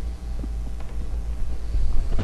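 Steady low hum of room tone, with no other distinct sound.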